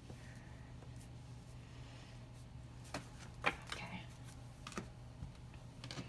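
Light taps and clicks of cards being handled and set down on a tabletop, the loudest about three and a half seconds in, over a low steady hum.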